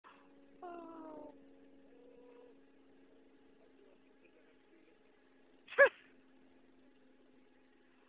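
Two animal calls: a drawn-out call falling in pitch about half a second in, then a short, loud cry near six seconds. A faint steady hum runs underneath.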